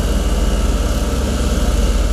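Diesel engine of a Bomag pneumatic-tyred road roller running steadily with a loud low throb as it rolls fresh asphalt.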